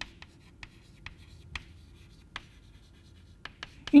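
Chalk writing on a chalkboard: about a dozen short, sharp taps and scrapes at irregular intervals as letters are written, with a pause in the middle.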